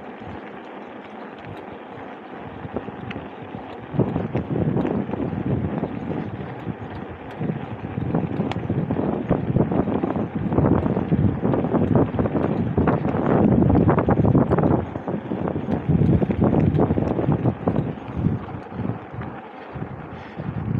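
Wind buffeting the microphone while a mountain bike is ridden over cracked pavement, with tyre rumble underneath. It is lower for the first few seconds, then gusts louder in repeated surges.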